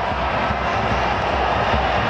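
Steady, unbroken stadium crowd noise with a low rumble underneath, during a penalty in a football shootout.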